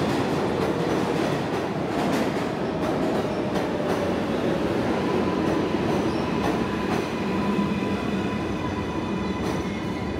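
New York City Subway 7 train of R188 stainless-steel cars pulling into a station and slowing, with a steady rumble and repeated clicks of wheels over rail joints. A thin high squeal of wheels and brakes comes in toward the end as it nears a stop.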